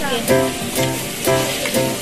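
Pork belly sizzling on a hot tabletop grill, a steady frying hiss, under background music with evenly repeating notes.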